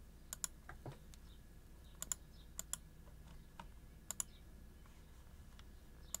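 Faint, sharp clicks from computer controls, mostly in quick pairs: four pairs spread over the few seconds, with a few single ticks and a softer knock about a second in.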